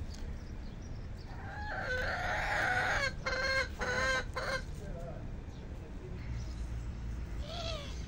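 A rooster crowing, one loud call of about three seconds starting near two seconds in that breaks into shorter pulses toward its end, followed by a few softer chicken calls.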